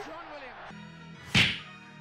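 A single sharp, whip-like hit sound effect about one and a half seconds in, over low steady intro-music tones that begin just before it.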